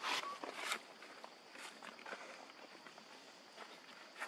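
Dry leaf litter rustling and crackling under monkeys moving about, in a cluster of crisp bursts in the first second and then scattered small crackles.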